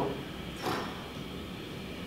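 A man's audible breath out, a short sigh-like exhale about half a second in, acting out someone calming down; then quiet room tone.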